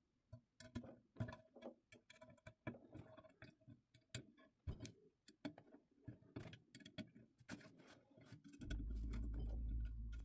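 Faint, irregular metallic clicks and ticks of an Allen wrench working the small hex bolts on the frame of a resin 3D printer's vat, loosening them. A steady low hum comes in near the end.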